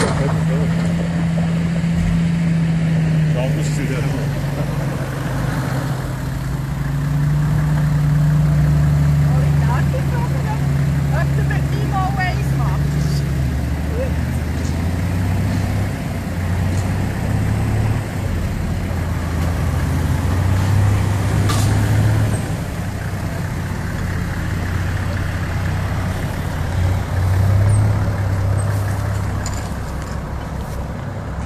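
Off-road vehicle engines running at low revs while crawling through mud and ruts: a steady drone that settles to a lower pitch partway through, where the tarp-covered army truck gives way to a Toyota Land Cruiser.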